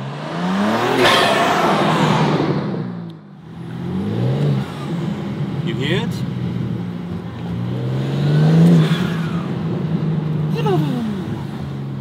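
BMW M4 G82's twin-turbo straight-six accelerating hard in several pulls, its note climbing in pitch with each, with a brief drop about three seconds in. Its exhaust valves are held open by an aftermarket valve controller, and an Eventuri intake is fitted.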